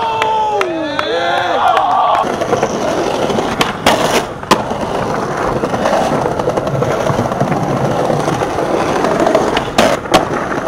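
Skateboard wheels rolling on pavement, with sharp clacks of the board popping and landing about four seconds in and again near the end. A voice calls out over the first two seconds.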